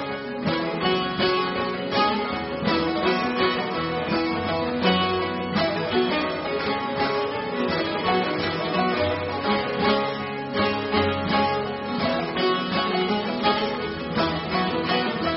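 Instrumental passage of several bağlamas (long-necked Turkish saz) plucked in fast, even strokes with the folk ensemble, between sung verses of a Turkish folk lament.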